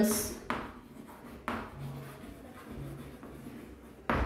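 Chalk writing on a chalkboard: faint scratching strokes, with two sharper strokes about half a second and a second and a half in.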